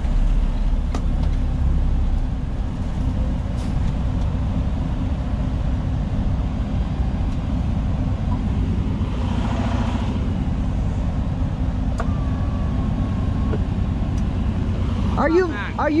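Semi truck's diesel engine running steadily at low speed, heard from inside the cab as the truck creeps forward and stops. A short hiss of air comes about nine seconds in.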